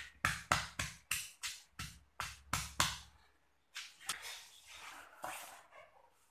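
Stone pestle pounding chillies, tomato, shallots and garlic in a stone mortar, about three strikes a second, stopping about three seconds in; after a short pause, a softer scraping sound in the mortar follows.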